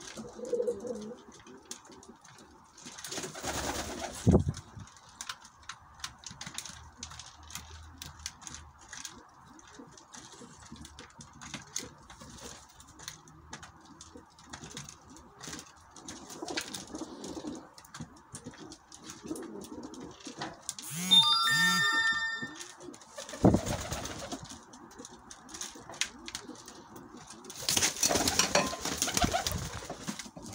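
Domestic pigeons cooing while pecking seed from a plastic feed trough, with a steady patter of small beak clicks. A few louder rustling bursts come early on and in the last couple of seconds, and a brief high ringing tone sounds about two-thirds of the way through.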